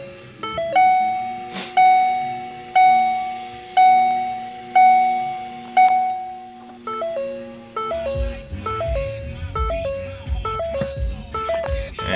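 Ford Focus ST dashboard warning chime sounding with the ignition on and the engine off: a single pitched ding repeating about once a second, each fading away, then a quicker run of shorter, lower dings in the second half. A low rumble runs under the later dings.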